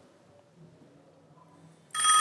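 Quiet room tone, then right at the end a phone starts ringing with a ringtone of several steady high tones: the incoming call placed by the dialer's manual dial.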